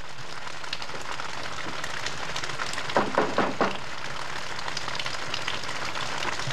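Steady hiss of rain falling, with a quick run of four sharp thumps a little past halfway.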